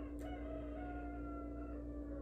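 A single drawn-out animal call, about a second and a half long, sinking slightly in pitch at its end, over a steady low hum.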